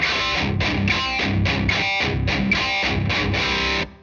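Harley Benton DIY kit electric guitar played with distortion through an amp: a rhythmic, quickly picked riff of repeated chords that stops abruptly near the end.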